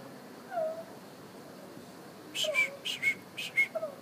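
Common hill myna (talking myna) giving a soft gliding note, then a quick run of short whistled notes mixed with sharp clicks in the second half, the bird's mimicking vocal repertoire.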